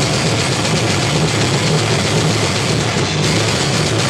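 Live heavy metal band's distorted electric guitars and bass held in a loud, steady wall of sound, with no clear drum beats.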